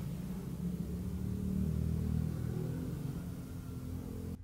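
Low, steady rumble of a distant motor-vehicle engine, a little louder in the middle and easing off near the end: the constant background vehicle noise around the shop.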